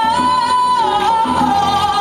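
A woman singing one long, wordless high note live, dipping in pitch about a second in and then held, over a band with conga drums.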